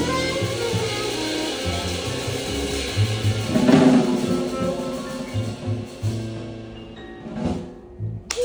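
Live jazz quartet of saxophone, upright bass, piano and drum kit playing the closing bars of a tune, with a loud drum and cymbal hit about four seconds in. The music then dies away, with one last hit just before the end.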